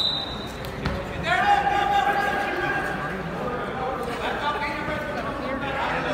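Voices shouting across a large, echoing gym during a wrestling bout, with a single thump about a second in from bodies hitting the mat.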